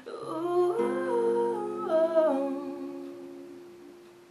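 A girl's voice hums a short wordless phrase that glides up and down, over an acoustic guitar chord that rings on and slowly fades out.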